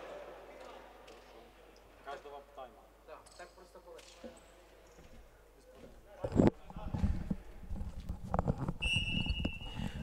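Sports hall during a stoppage: faint, indistinct players' voices echo in the hall. About six seconds in there is a loud low thump, then a run of low knocks and rumble close to the microphone. A short high steady tone sounds near the end.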